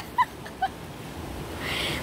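Sea waves washing over shoreline rocks, heard as a steady rush of noise. A few short, high-pitched vocal squeaks come in the first half-second.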